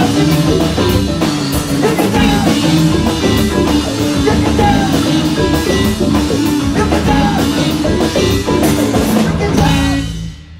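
Rock band playing loudly live, with drum kit and guitar; the song ends abruptly right at the end.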